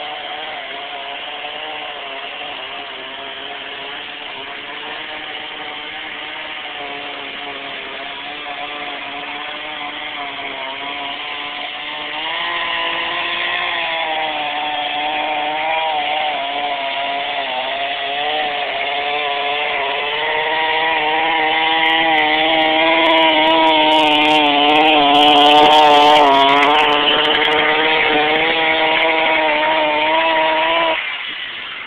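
A motor running steadily, its pitch wavering a little, growing louder about twelve seconds in and again about two-thirds of the way through.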